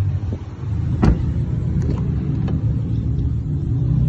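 Steady low rumble of a 2017 Chevrolet Malibu idling, with one sharp knock about a second in and a few fainter clicks after it.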